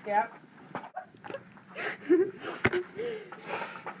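Quiet, breathy human voices: a short spoken reply at the start, then soft murmurs and breaths, with a single sharp knock about two and a half seconds in.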